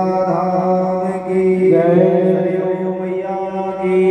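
A voice chanting a Hindu devotional mantra in long, held notes, the pitch changing about a second and a half in.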